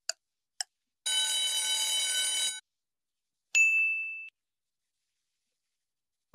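Countdown-timer sound effect running out. Two last ticks half a second apart, then a steady electronic alarm ring for about a second and a half as time runs out, and a single bright ding about three and a half seconds in that fades away.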